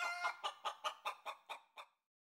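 A rapid, even run of short clucking calls, about five a second, fading out near the end.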